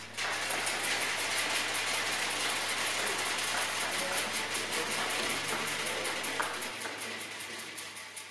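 Audience applauding: dense, steady clapping that begins as the music ends and eases slightly near the end.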